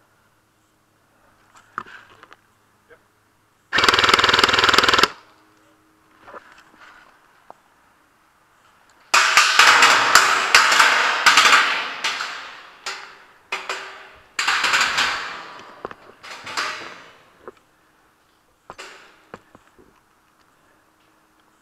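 Airsoft guns firing on full auto in rapid bursts: one long, loud burst about four seconds in, then a string of bursts through the middle of the stretch, and a short one near the end.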